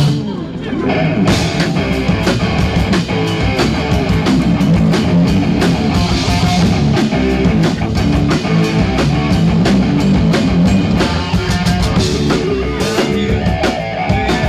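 A rock band playing live, with electric guitar, bass guitar and drum kit together. The sound dips briefly for about a second at the start, then the full band comes back in.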